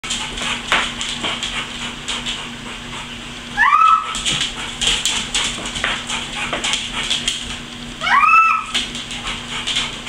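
A pit bull moving around a plastic laundry basket on a tile floor, with many short clicks, and two short high whines about four and eight seconds in, each rising then holding.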